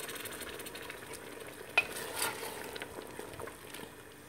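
Wooden spoon stirring a lamb-and-tripe stew in a metal pot while the liquid sizzles, with a sharp knock about two seconds in.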